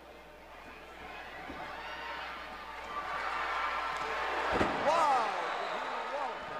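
Arena crowd noise building steadily louder, then a heavy thud of a wrestler's body hitting the ring mat about four and a half seconds in, followed at once by shouting.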